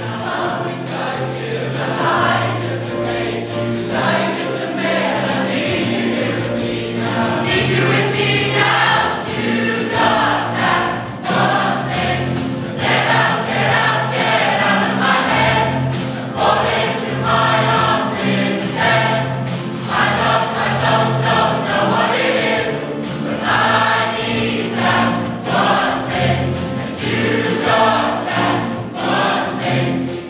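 Large choir of student voices singing a pop song arrangement, with sustained low notes underneath.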